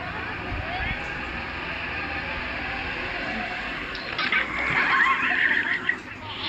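People's high-pitched shrieks and laughter break out about four seconds in and stay loud to the end, over a steady background hiss.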